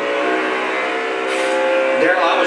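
NASCAR stock-car V8 engines running at a steady, sustained high pitch, heard from a television race broadcast.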